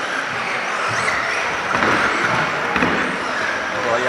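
Battery-electric radio-controlled model cars running around an indoor track, their motors giving faint high whines that rise and fall, over the murmur of voices in a large reverberant sports hall.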